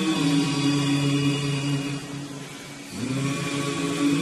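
Saxophone playing a slow melody in long held notes. The sound dips briefly about two seconds in, and the next phrase begins about three seconds in.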